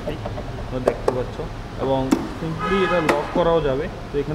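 Plastic lid of a Vespa scooter's front glovebox being handled and pushed shut, giving a few sharp plastic clicks and knocks, with a man's voice talking over it.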